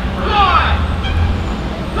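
City buses running past in traffic, a steady low engine rumble, with a brief falling-pitched sound about half a second in.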